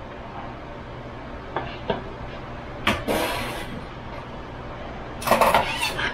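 Kitchen handling noise: a few light taps, a sharp knock followed by a short scrape about three seconds in, then a burst of louder knocks and clatter near the end as a small bowl of sliced mushrooms and a kitchen knife are moved about on a wooden cutting board. A steady low hum runs underneath.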